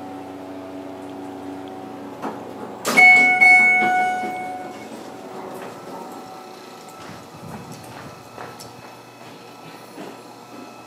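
Schindler hydraulic elevator car running with a steady hum that stops as it comes to rest. About three seconds in its arrival chime rings, struck twice in quick succession and fading over a second or two. Doors sliding open follow, with footsteps.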